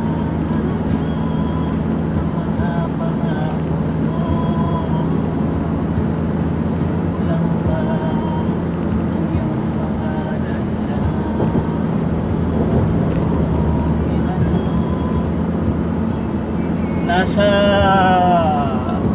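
Steady road and engine noise inside a car's cabin cruising at highway speed, with faint music over it.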